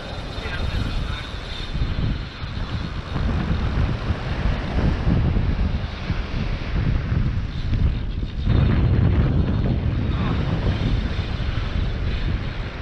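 Strong wind buffeting the microphone in a continuous low roar, gusting louder about two-thirds of the way through.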